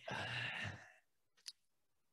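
A person's sigh into a close headset microphone, a breathy exhale about a second long, followed by a short faint click.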